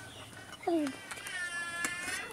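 An animal calling twice: a short falling call, then a longer, higher call that rises and falls near the end.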